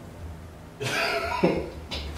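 A man's stifled laugh bursting out as a cough, once, about a second in.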